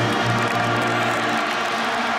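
Orchestral national anthem played over a stadium's sound system, holding a sustained chord whose low bass note drops out about one and a half seconds in.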